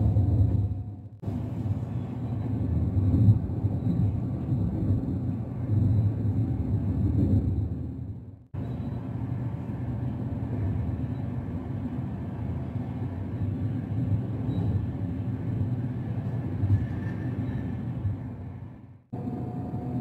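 Steady low rumble of an intercity train running, heard from inside the passenger carriage as wheels roll on the rails. The sound fades away and cuts abruptly back in about a second in, again about eight and a half seconds in, and once more near the end.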